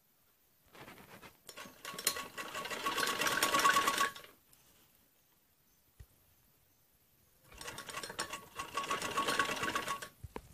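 Sewing machine stitching in two runs. It starts slowly about a second in, speeds up and stops just after four seconds, then stitches again from about seven and a half seconds to the end.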